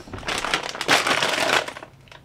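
Plastic chip bag crinkling for about a second and a half as a hand rummages inside it.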